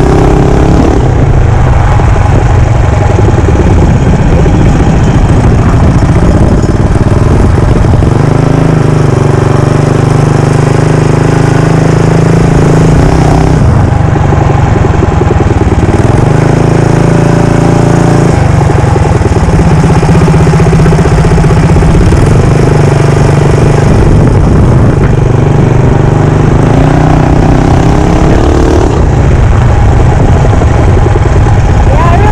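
Modified Predator 212 single-cylinder four-stroke engine on a Mega Moto 212 mini bike, ridden under way. It runs loudly and steadily, its pitch climbing and dropping back several times as the throttle is opened and eased off.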